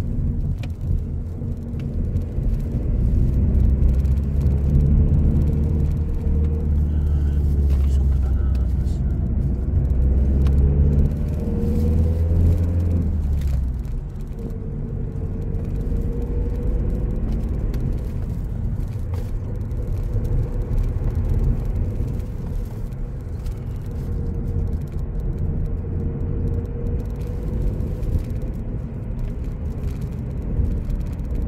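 Car engine and road noise heard from inside the cabin while driving. A deep engine drone, louder for the first half, drops off suddenly about halfway through, and the car runs on more quietly with a steady rumble.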